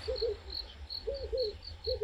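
Crickets chirping steadily at dusk, short high chirps about four a second, with a few soft low calls from another animal in between.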